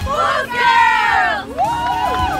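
A group of women shouting a cheer together, several high voices overlapping. One long shout falls in pitch, then a second shout rises and falls near the end.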